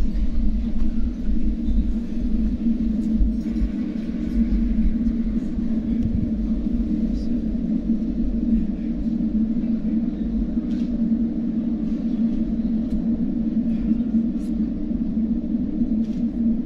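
Steady low hum of a large banquet hall with a few faint clicks and rustles: a room full of people standing through a minute of silence.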